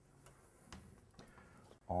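Chalk writing on a blackboard: a few faint, irregular ticks and taps of the chalk against the board.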